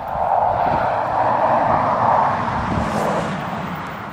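A passing engine: a rushing noise that swells over about two seconds and then fades away as it goes by.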